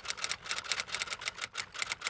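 Typewriter-style typing sound effect: a quick, slightly uneven run of key clicks, about seven a second.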